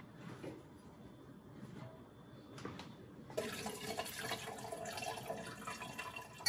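Faint room tone, then, about three and a half seconds in, a steady pour of liquid: herb-infused wine tipped from a stainless stockpot and strained through a colander.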